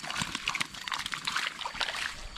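Water splashing and trickling in a shallow fishpond: a run of small, irregular splashes and crackles.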